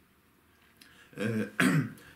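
A man clearing his throat about a second in, a short voiced sound followed by a harsher burst.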